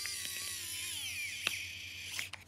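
Wowstick pen-style electric precision screwdriver running as it drives a tiny screw into a plastic housing: a steady high motor whine that drops in pitch about halfway through, with a sharp click near the middle.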